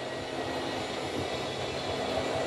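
Twin 12-volt electric motors of a travel trailer's LCI (Lippert) slide-out system, one on each side, running steadily as they draw the dinette slide-out straight in.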